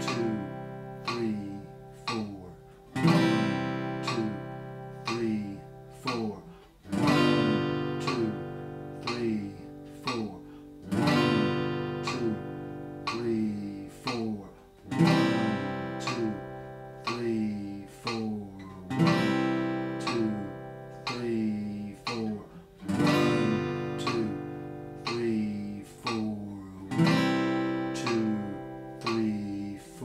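Acoustic guitar strummed with one down stroke every four seconds, each chord left ringing for a whole note at 60 beats per minute. A metronome ticks once a second underneath.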